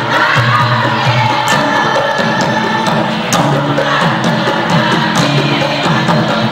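Women's dikir barat chorus singing loudly in unison, a Kelantanese Malay group chant, with sharp percussive hits now and then.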